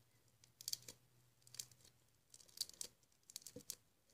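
Faint, irregular little clicks and crackles of homemade slime being squeezed and pulled between fingers.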